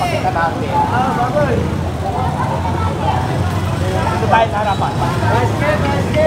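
People talking over one another, their words unclear, over a steady rumble of street traffic.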